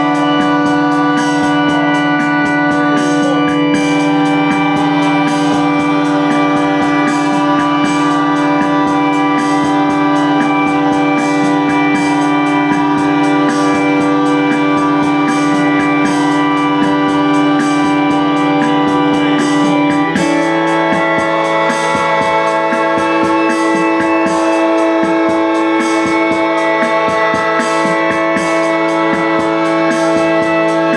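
Loud live drone music: a held, organ-like chord sustained through the speakers, shifting to a new pitch about twenty seconds in, with a crackling texture over it.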